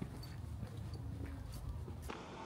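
Footsteps on a concrete path, faint, about two steps a second.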